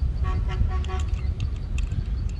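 Two short horn-like toots in quick succession, each held at one steady pitch, over a steady low rumble.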